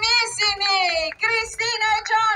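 A woman's high voice through a PA loudspeaker, singing two long drawn-out phrases whose notes slide downward in pitch, over a faint low beat.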